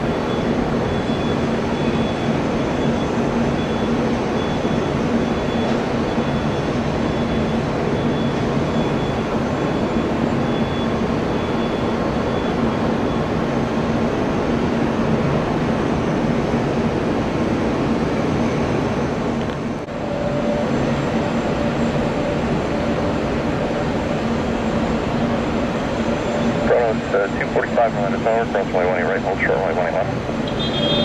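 Jet airliner engines running steadily, with a low hum and a faint high whine over the engine noise. About two-thirds of the way in the sound dips briefly, then carries on with a different steady hum.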